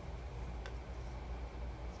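Low, steady room hum with one faint, short click about two-thirds of a second in.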